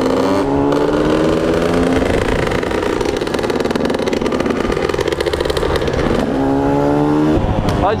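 Onboard sound of a KTM motard motorcycle's engine, rising in pitch as it accelerates shortly after the start, running steadily, then rising again near the end.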